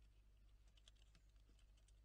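Faint, irregular small clicks, several a second, of Ezo squirrels cracking and chewing seeds on a wooden feeder tray, over a low steady hum.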